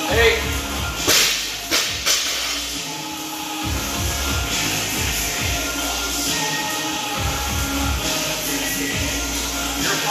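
A loaded 115 lb barbell dropped from overhead onto the gym's rubber floor, its bumper plates hitting and bouncing in a few sharp knocks between one and two seconds in, over music playing in the gym.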